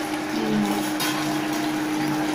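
Steady hum and whir of an induction cooktop running under a steel pot, with one sharp metallic clink about halfway through as the steel pot lid is set down on the counter.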